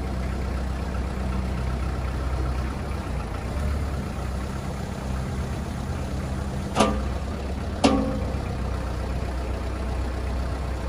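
Kubota M59 tractor loader backhoe's diesel engine running steadily while the backhoe boom is worked. Two sharp clanks, about a second apart, stand out past the middle.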